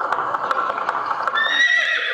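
A recorded sound effect of a horse's hooves galloping, a few clip-clops a second, played over the hall's speakers. A loud horse neigh comes in about one and a half seconds in.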